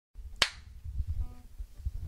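A single sharp click about half a second in, followed by soft, low thumps and rumble of handling in a small room.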